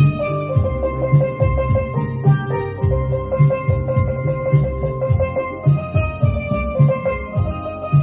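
Steel pan played as a melody, ringing pitched notes with rapid rolled repeats on single notes, accompanied by a pair of maracas shaken in a steady, even rhythm. A low beat pulses underneath.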